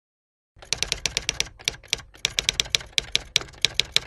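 Typing sound effect: rapid key clicks in quick runs with brief pauses, starting about half a second in.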